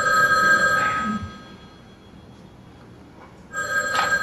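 Telephone ringing twice: a steady two-pitch ring lasting about a second and a half, a pause of about two seconds, then the next ring starting near the end.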